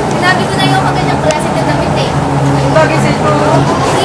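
Indistinct chatter of people in a busy shop, over a steady background hum.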